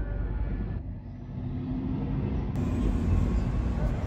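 Low, steady rumble of road traffic, with a vehicle engine's hum in the middle.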